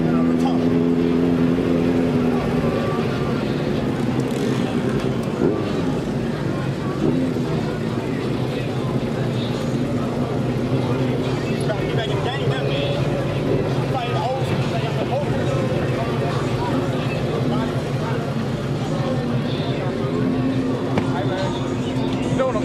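A car engine idling steadily with an even low hum, with people talking over it.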